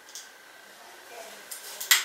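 Handling noise of a handheld camera gimbal being pushed into its Feiyu G4 cloth pouch: faint fabric rubbing, then a few short rustles and light clicks near the end, the last the loudest.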